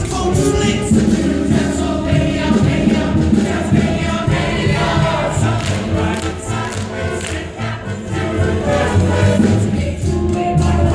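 Ensemble cast singing a lively musical-theatre chorus number together, with instrumental accompaniment and a steady beat.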